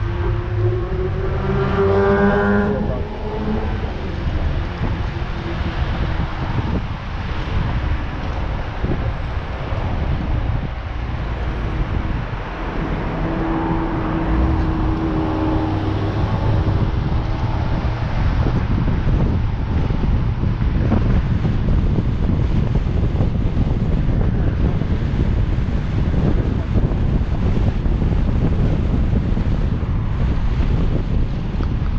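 Car driving along town streets: steady engine and tyre noise with wind buffeting the microphone. An engine note rises in pitch about a second or two in as the car speeds up, and another engine tone comes and goes around the middle.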